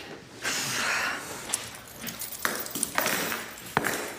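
Metal shackle chains rattling, with a few sharp separate clinks.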